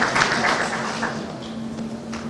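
Audience applause, dense at first and thinning out, fading away after about a second and a half.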